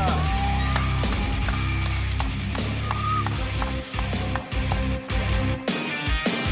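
Background music with a steady low bass line.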